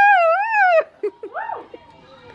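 A high-pitched voice holding one long wavering, howl-like note, cut off sharply less than a second in, followed by a couple of short squeaky rising and falling yelps.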